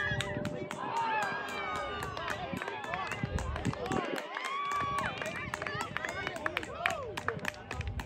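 Several voices shouting and calling out at once across an open soccer field, overlapping with no clear words, along with short sharp ticks.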